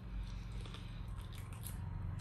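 A person biting and chewing cooked fish eaten by hand, close to the microphone, with several short crunchy clicks, over a steady low hum.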